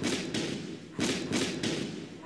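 Heavy thuds from a cartoon trailer's parody studio-logo intro: one at the start, a stronger one about a second in, and another shortly after, each dying away in a rumble.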